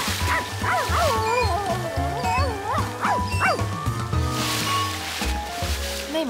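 Cartoon background music with a small dog yipping and barking over it, the yips thinning out after about three and a half seconds.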